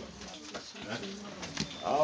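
Faint human voices, with a louder voice coming in near the end.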